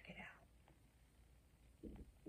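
Near silence: a faint whispered breath or word at the start, then soft handling sounds near the end as a crocheted yarn mandala is lifted up.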